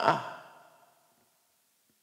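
The end of a man's spoken word, his voice falling and fading out within the first second, followed by silence.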